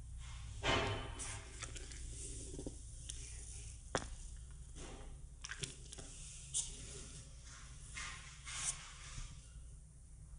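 Rope being handled while a trucker's hitch is tied: soft rustling and sliding as the cord is pulled through its loops, with scattered light clicks and taps. The loudest rustle comes just under a second in, over a faint steady low hum.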